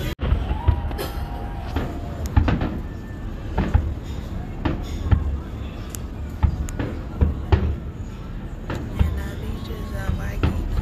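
Fireworks bursting, a dozen or so sharp bangs and thuds at irregular intervals over a steady low rumble.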